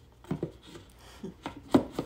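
A black cardboard box being handled, with a few dull knocks as its lid comes off and goes back on and the contents are handled. The loudest knock comes near the end.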